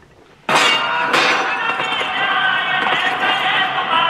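Film trailer soundtrack cutting in abruptly about half a second in: a loud, dense layer of epic music and many voices.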